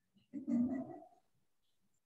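A short voice-like call lasting just under a second, starting about a third of a second in.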